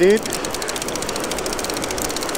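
Conventional fishing reel's clicker ratchet clicking rapidly and steadily as line is pulled off the spool: a shark bait is being run out by kayak. Surf noise runs underneath.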